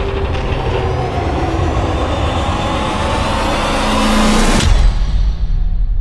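Trailer sound design: a dense riser that climbs in pitch and swells for about four and a half seconds, then cuts off abruptly into a deep low boom and rumble.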